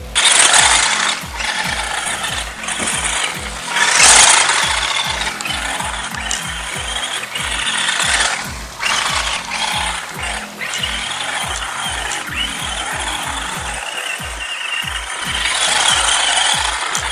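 Electric RC truck driving hard on loose dirt: a motor and gear whine that rises and falls with the throttle, with a hiss of dirt and gravel thrown up by the tyres, loudest about four seconds in and again near the end. Background music with a steady beat runs underneath.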